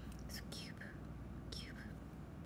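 A young woman whispering under her breath, three short hissy breaths or syllables, over a low steady hum.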